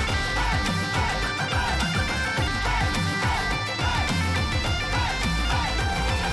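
Celtic-Punjabi folk music: bagpipes playing a repeating melody over their steady drone, backed by a dhol drum beat.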